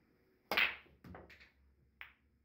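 Pool break shot: a loud sharp crack about half a second in as the cue ball smashes into the racked balls, followed by a few lighter clicks of balls colliding and knocking off the cushions, and another sharp click near the end.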